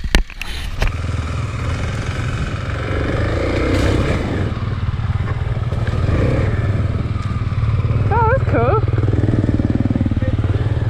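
Kawasaki KLX250 single-cylinder four-stroke dirt bike engine running steadily as it is ridden over rough ground. A sharp knock comes right at the start, and a brief warbling, voice-like sound comes about eight seconds in.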